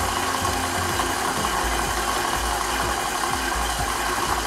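Electric stand mixer running steadily, its beater working granulated sugar into broken-up almond paste for chocolate amaretti dough, until the mix turns fine like sand.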